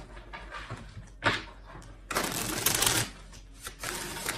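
Tarot cards being shuffled by hand: a sharp snap about a second in, then a burst of rapid card flicking lasting about a second, and a few light taps near the end.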